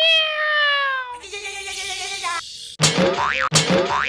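Comic sound effects: a springy 'boing' tone that slides down in pitch for about a second, then a lower held tone, then a run of quick rising-and-falling sweeps starting about three seconds in.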